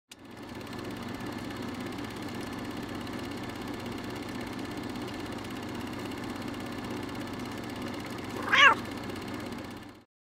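A steady low background noise, then a single short cat meow near the end, the loudest sound in the clip.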